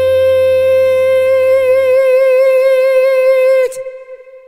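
Closing held note of a Russian pop ballad: one long sung note with vibrato that widens as it is held, over band backing that drops out about two seconds in. The note cuts off shortly before the end, leaving a faint ringing tail.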